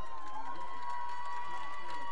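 Spectators' crowd noise with scattered cheering and distant voices as a soccer match ends. A steady high-pitched tone runs through it.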